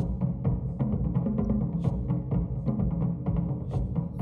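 Japanese taiko drumming played loud through a large ported loudspeaker with a big woofer and two bass ports, picked up in the room: a quick run of drum strokes over heavy, deep bass.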